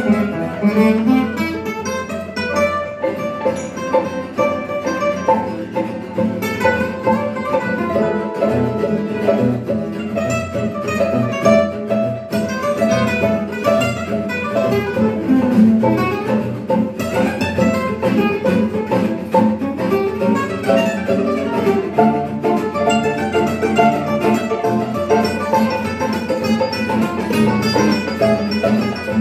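Live gypsy jazz waltz played on acoustic guitars and violin: a picked guitar melody over strummed rhythm guitar, with the violin playing along.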